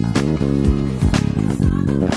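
deOliveira Dream KF five-string jazz bass with Bartolini pickups, played fingerstyle: a steady line of ringing low notes with many overtones. A sharp percussive hit comes about once a second.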